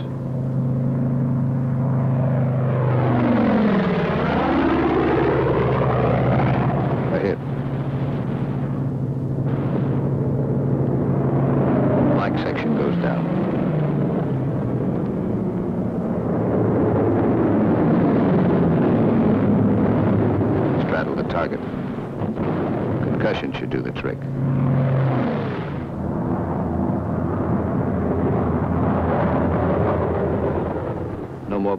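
P-47 Thunderbolt fighters' radial piston engines droning steadily. Several times the engine pitch sweeps down and back up as the planes dive and pull out.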